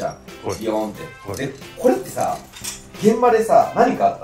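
Men talking over light background music, with metallic clinks from the steel buckles and hooks of a full-body fall-arrest harness being handled.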